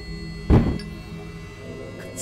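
Film background score holding a sustained drone, with one sudden loud low hit about half a second in.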